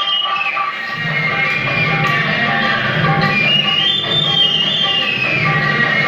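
Instrumental interlude of a Telugu film song's backing track, with no voice over it. A high melody climbs and falls in steps twice over a steady beat.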